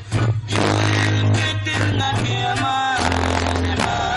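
Live norteño band playing an instrumental passage between sung verses: accordion, twelve-string bajo sexto, electric bass and drums. The sound dips briefly at the very start, then the music runs on steadily.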